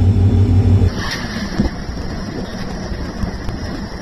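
A train running, heard from on board: a loud, pulsing low rumble of wind buffeting the microphone, which cuts off about a second in to a quieter, steady running rumble of the train.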